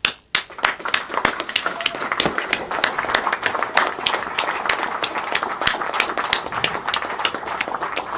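A small group applauding, with many quick, overlapping hand claps that start suddenly.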